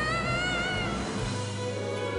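A solo singer holding a high, wavering note over a backing accompaniment; the voice dies away about a second in while the accompaniment carries on.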